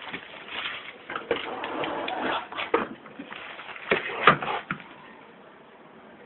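Rustling and handling noise with several sharp knocks and clicks, the loudest about four seconds in, from hands working on a disassembled laptop. It settles to a low hiss near the end.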